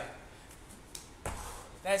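A single dull thump, about a second in, of feet landing from a jump on the gym floor. A man's voice starts speaking near the end.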